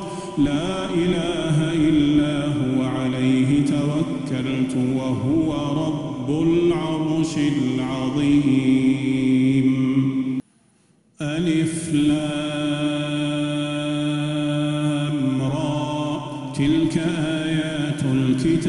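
A solo male voice chanting Quranic recitation (tajweed) in long, melodic, held phrases. The recitation breaks off into near silence for under a second about ten and a half seconds in, then resumes.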